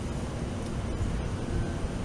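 Steady low rumble of outdoor background noise, with no speech.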